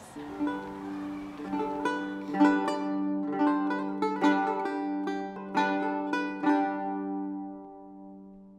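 Music: a plucked string instrument plays a short, slow melody of ringing notes over a held low note, dying away near the end.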